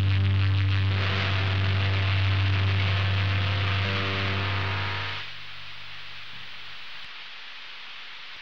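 Closing seconds of a metal track: a steady, low, distorted drone with hiss, the guitar amplifier's hum and noise left after the playing stops. About five seconds in, the drone drops away, leaving quieter hiss until the recording ends.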